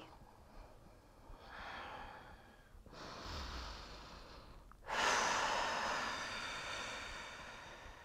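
Slow, deep human breathing: a soft breath about a second and a half in, another at about three seconds, then a louder long exhale at about five seconds that fades away.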